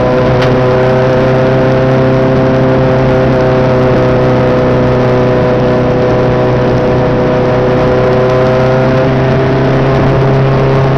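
Mk2 Volkswagen race car's engine heard from inside the caged cabin, running hard under load at a near-steady pitch. There is a single brief click about half a second in.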